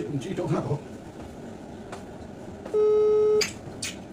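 A phone's call tone: one steady beep of a bit under a second, about three seconds in, the ringing signal of an outgoing call waiting to be answered.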